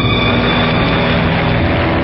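Radio-drama sound effect of an aircraft engine droning steadily, as a dark music cue fades out at the start.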